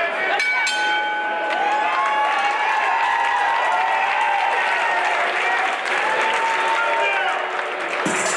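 Boxing ring bell struck twice about half a second in, ringing for about a second and a half to end the round, followed by the crowd cheering and shouting.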